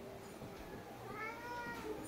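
A cat's single soft meow, its pitch rising then falling, starting about a second in.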